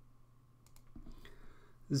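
A few faint, sharp clicks against a low steady hum, then a man's voice starts speaking Persian right at the end.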